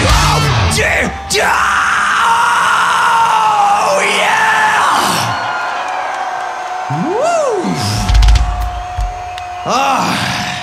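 A live heavy metal band's song breaks off about half a second in. An electric guitar then holds a sustained tone, with smooth rising-and-falling pitch swoops over it, while the crowd yells.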